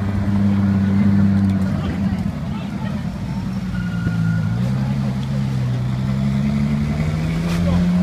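Ferrari LaFerrari's 6.3-litre V12 running at low revs as the car pulls away slowly, a steady deep engine note that rises gently near the end.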